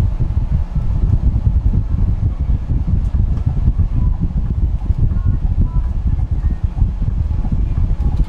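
Heavy, uneven low rumble of a bus driving along, as heard by a passenger on board.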